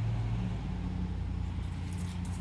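A steady low machine hum, its pitch stepping up about half a second in, over a faint hiss.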